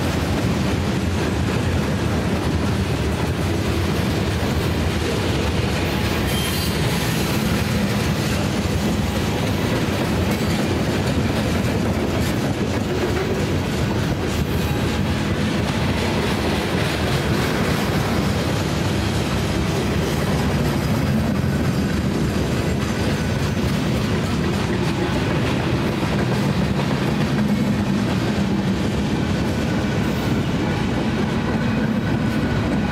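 Freight cars of a mixed manifest train (covered hoppers, tank cars, boxcars) rolling past at close range, a steady rumble and rattle of steel wheels on the rails that holds level throughout.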